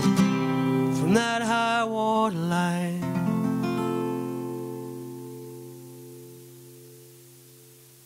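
Acoustic guitar playing the last bars of a folk song, then a final chord left to ring and fade slowly away over the last few seconds.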